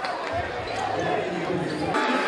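Basketball bouncing on a hardwood gym floor, with voices and crowd noise in a large echoing hall.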